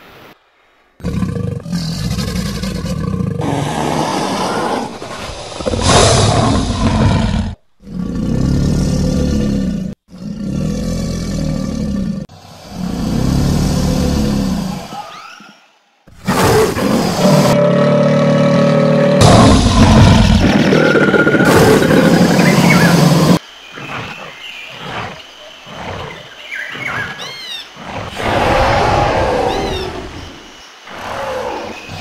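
A run of loud roars, dubbed in as the calls of the stop-motion dinosaurs and crocodilians: about five separate roars of a few seconds each with short gaps, the longest lasting about seven seconds. Quieter, broken growls follow near the end.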